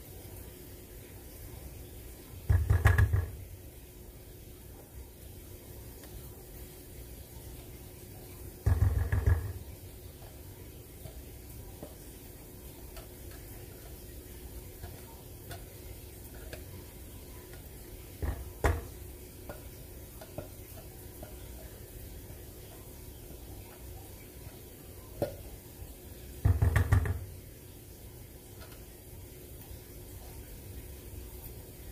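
A metal food can knocked and scraped with a silicone spatula against a stainless steel saucepan as its thick contents are worked out; three short bursts of rapid knocking, with a few single clicks between them.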